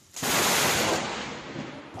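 Thunderclap of a lightning strike right at the microphone: a sudden, very loud crack about a quarter second in that dies away over about a second and a half.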